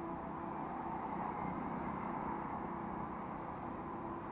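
Motorcycle cruising steadily at low city speed, a faint even engine hum under wind rushing over the camera microphone.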